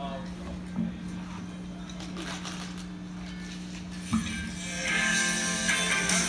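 A steady low hum with a couple of brief thumps, then about five seconds in a rock band comes in loudly on electric guitars and drums.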